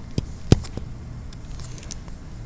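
Stylus tapping on a tablet screen during handwriting: a few sharp taps in the first second, the loudest about half a second in, then only faint ticks.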